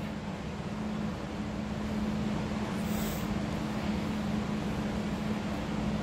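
Steady hum and hiss of a running electric fan, with a brief high hiss about halfway through.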